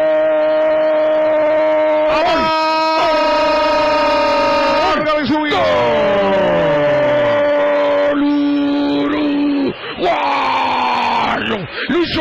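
Radio football commentator's long drawn-out goal cry, a shouted "gooool" held on one high note for several seconds at a time with short breaks for breath. About eight seconds in the cry drops to a lower held note, and near the end it turns into shouted words.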